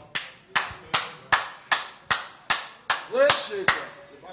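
Hand clapping at a steady beat, about ten claps at roughly two and a half a second. A short vocal exclamation comes near the end.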